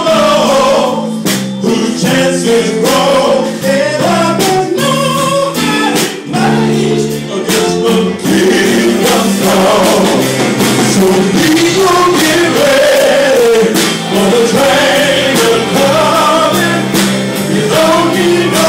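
Live band and male vocal group performing a gospel-soul song: male voices singing over drums and electric guitar.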